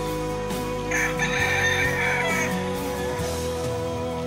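A rooster crowing once, for about a second and a half, starting about a second in, over steady background music.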